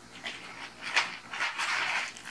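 Plastic packaging rustling and crinkling in the hands, in irregular crackles that grow busier about a second in.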